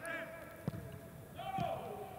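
Footballers shouting and calling on the pitch, heard clearly because the stadium has no crowd, with a sharp knock of a boot striking the ball about two-thirds of a second in.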